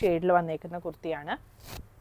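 A woman speaking for the first second and a half, then a brief swish of cotton fabric being handled near the end.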